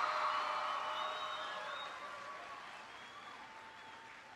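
Audience of students applauding, the applause fading steadily.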